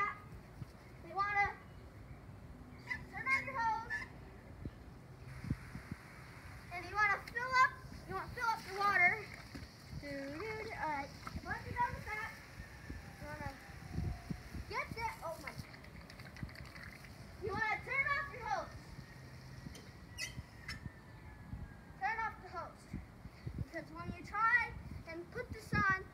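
A child's high-pitched voice in short bursts of shouts and exclamations throughout. From about five seconds in until about fifteen seconds, a steady hiss of water running from a garden hose fitted with a cluster of water balloons.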